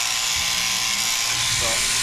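Overhead-drive sheep shearing handpiece running steadily, its comb and cutter shearing the fleece off a lamb.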